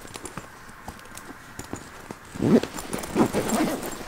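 A fabric backpack and clothes being handled and stuffed: light rustling and clicks, then a louder stretch of rustling and knocking from about halfway through.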